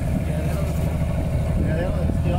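Motor of a small passenger launch running steadily, a constant low drone as the boat moves slowly across the lagoon.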